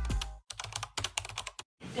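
A quick, irregular run of light clicks, about a dozen in just over a second, like typing on a keyboard. Music fades out just before the clicks, and the clicks stop abruptly near the end.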